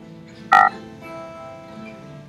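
Soft acoustic guitar music with held notes, broken about half a second in by a brief, loud pitched sound that cuts off quickly.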